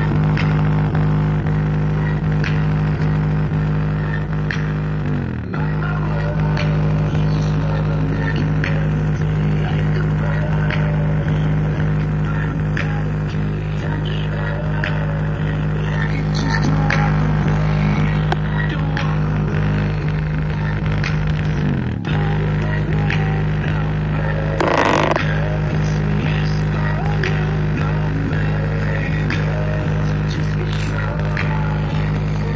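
Bass-heavy music played loud through a Grasep DQ-15 portable speaker, dominated by a steady droning bass that sets its passive radiator pumping. There are downward sweeps in pitch about five seconds in and again after about twenty seconds.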